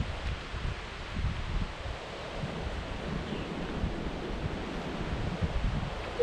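Wind buffeting the camera microphone in uneven low gusts, over a steady outdoor hiss of wind in the foliage.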